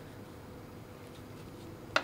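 Quiet handling of a fabric scrap and button while the button is pushed through a freshly cut buttonhole to test the fit: a few faint ticks and one sharp click near the end, over a faint steady hum.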